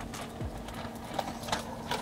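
A few soft, scattered clicks over a faint, steady low hum.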